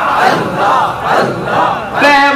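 A crowd of men chanting zikr together, many loud voices overlapping in rising and falling waves.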